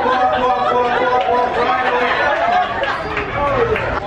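Speech: a man talking into a handheld microphone over a hall's sound system, with the audience chattering.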